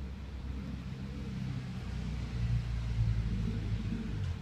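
A low engine rumble from a motor vehicle nearby, growing louder in the second half and easing off at the end, as of a vehicle going past.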